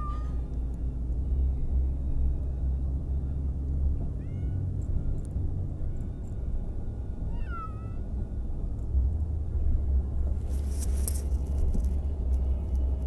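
A house cat meowing three times, each call falling in pitch, over the steady low rumble of a moving car heard from inside the cabin. A brief rustle comes near the end.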